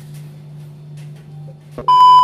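A faint steady low hum with faint light clicks, cut off near the end by a sudden loud, steady 1 kHz test-tone beep of the kind played over TV colour bars.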